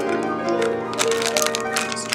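Classical piano background music, held notes sounding steadily, with a few light clicks.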